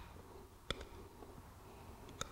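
Hoof nippers snipping horn at the heel of a horse's hoof: one short, sharp click about two-thirds of a second in, otherwise faint.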